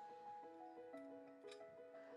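Very faint background music: soft held notes that shift to new pitches every half second or so.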